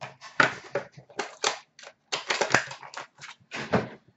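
Card-box packaging being handled: a fast, irregular run of crackles, clicks and knocks as boxes and wrapping are moved about.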